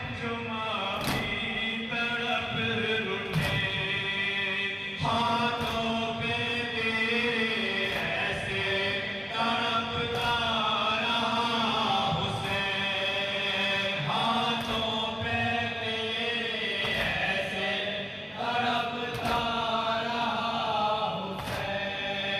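Group of men chanting a noha, a Shia lament for Imam Hussain, through a microphone and PA, with lead voices carrying the melody and others joining in. Sharp slaps of matam (chest-beating) come now and then.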